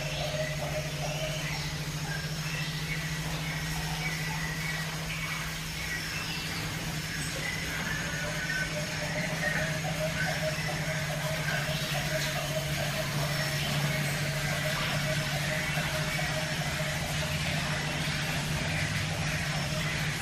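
Steady low machine hum with no change in level, with faint wavering higher tones above it.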